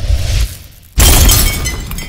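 Logo-intro sound effect of glass shattering: a low swell that fades, then about a second in a sudden loud crash of breaking glass that rings and dies away.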